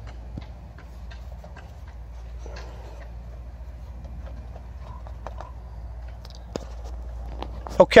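Scattered soft clicks, taps and rustles of hands handling a plastic seed tray and a wet paper towel as a cut strawberry runner is wrapped, over a low steady rumble.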